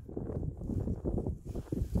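Wind buffeting the microphone: a low, uneven rumble that comes and goes in gusts.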